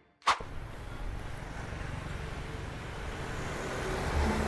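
Steady road traffic noise from a busy main road, after a short sharp click near the start.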